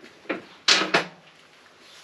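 Metal parts handled on a workbench as an aluminium adapter is put down and a cast-iron manifold is picked up: a light tap, then one sharp knock and clatter just under a second in.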